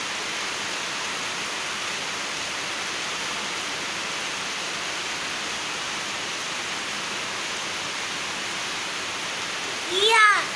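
Steady rain falling, an even hiss that holds at one level throughout.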